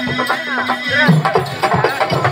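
Live stage-drama music: a steady harmonium drone under a regular percussion beat, with a high, wavering melody line sliding up and down over it.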